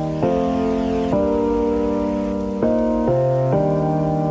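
Background music of sustained keyboard or synth chords that change every second or so, over a steady hiss like rain.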